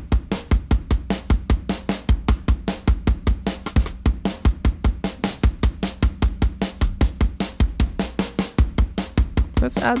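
Programmed drum-and-bass groove from a Groove Agent drum preset looping at a fast, steady tempo: kick, snare and busy cymbal hits, about five a second. The drums run through the Oeksound Bloom adaptive tone shaper while its high band is being boosted and swept down to around 2.5 kHz.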